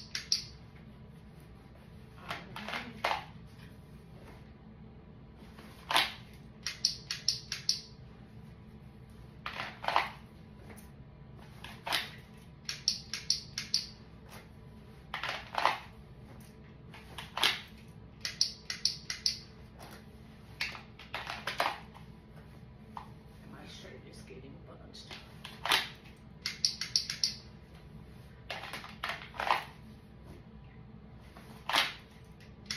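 Pistol dry-fire practice with a T-Trigger training insert: runs of four or five quick trigger clicks, about five a second, repeated every few seconds. Single louder clacks come in between as the pistol is drawn from and put back in the holster.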